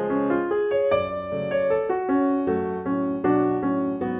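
Eagle piano accordion playing a melody over held chords, the notes moving a few times a second.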